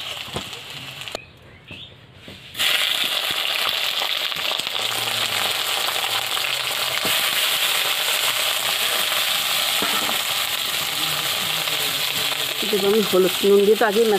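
Chunks of eggplant frying in hot oil in an iron wok: a steady sizzle that sets in after a short break about two seconds in.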